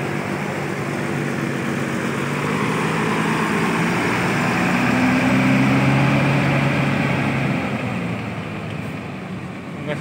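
Diesel engine of a Mercedes-Benz coach running as the bus drives close past and moves off, loudest about five to six seconds in and fading near the end.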